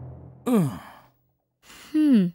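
A person sighing twice, each a short voiced sigh that falls in pitch: one about half a second in, the other near the end.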